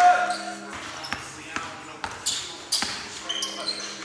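Basketball game sounds on a hardwood gym floor: several sharp knocks of the ball bouncing, short high sneaker squeaks, and players' voices calling out, in an echoing hall.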